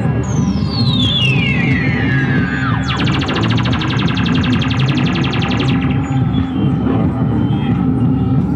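Live experimental electronic music: a synthesized tone sweeping steeply downward in pitch, then a rapid buzzing pulse from about three seconds in that stops abruptly before six seconds, over a steady low drone.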